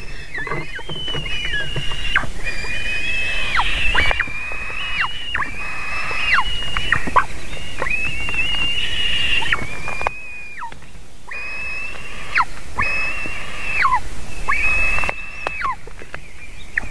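Eagle chicks begging at the nest while being fed: a run of high, thin whistled calls, each held for about half a second to a second and ending in a sharp downward drop, repeated a dozen or so times with a short pause a little past the middle.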